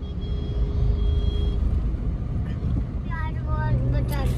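A moving car's steady low road and engine rumble, heard from inside the cabin.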